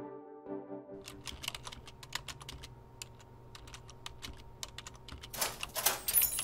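A short synth musical sting with sustained notes dies away in the first second. Then irregular, rapid computer keyboard typing clicks over a faint room hum, with a louder burst of noise shortly before the end.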